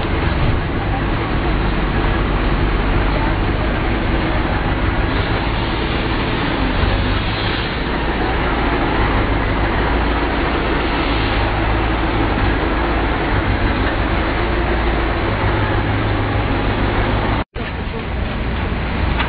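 Heavy fire truck carrying an aerial work platform, its diesel engine running steadily with a deep low hum.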